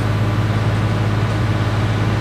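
Steady low engine hum under an even rushing noise.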